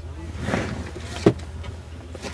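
Interior of an Amtrak passenger train rolling slowly along the station platform: a steady low hum from the train, a brief rushing swell about half a second in, and a sharp knock a little past one second in.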